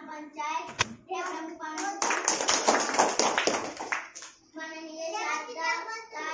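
An audience of children clapping in applause for about two seconds, between stretches of a child's speaking voice. There is a single sharp click just before the first second.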